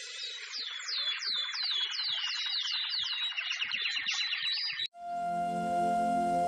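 Birdsong sound effect: a quick series of descending whistled chirps, about two to three a second, over a soft hiss, which cuts off suddenly near the end. A steady, held musical drone then comes in.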